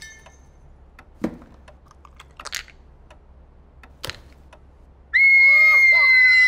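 A tense near-quiet with a few faint clicks, then about five seconds in a loud, long, high-pitched scream breaks out, with other voices crying out beneath it.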